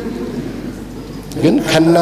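Low steady hiss and hum of an amplified church sound system during a pause, then a man's voice over the microphone resumes about one and a half seconds in.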